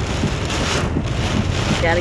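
Heavy rain pelting a car's windshield and roof, heard from inside the moving car over a steady low rumble of the car on the wet road.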